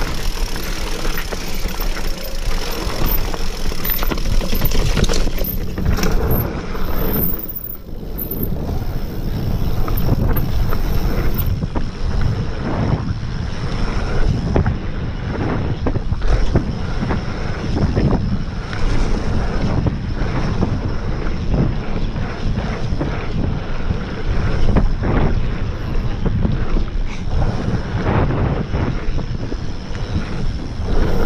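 Wind rushing over an action camera's microphone as a mountain bike rides fast down a dirt trail, with knocks and rattles from the bike over bumps all the way through.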